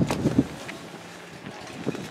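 Wind noise on the microphone outdoors, with a few short knocks in the first half second and a quieter, steady background after.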